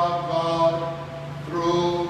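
A man's voice intoning a liturgical chant on long, steady held notes, with a steady low drone underneath.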